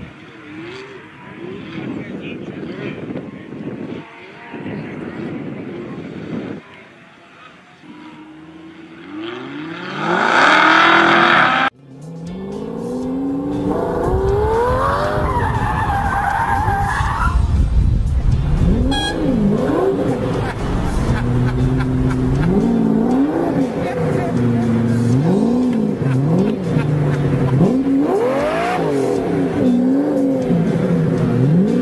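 Sports-car engines revving hard, their pitch rising and falling again and again as the cars accelerate and shift, with tyre squeal and skidding. About 12 seconds in, a loud burst of noise stops suddenly.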